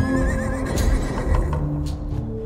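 Music with a horse whinny sound effect laid over it, a wavering call at the start.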